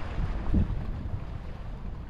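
Wind buffeting the microphone, an uneven low rumble that swells and dips, with a swell about half a second in, over a faint wash of sea.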